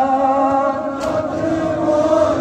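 Many men's voices chanting a noha, a mourning lament, together in long held notes, with one sharp knock about a second in.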